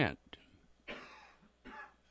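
A man's short, breathy throat noise close to a microphone about a second in, a brief clearing of the throat or a breath.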